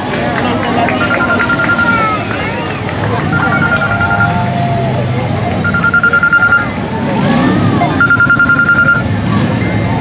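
A trilling, bell-like ringing tone held at one pitch, sounding four times, each ring about a second long and about two seconds apart, over the chatter of a crowd.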